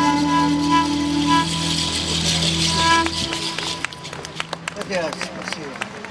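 Pan flute music over a held low chord comes to its final notes and stops about three seconds in. Scattered sharp clicks and street noise follow.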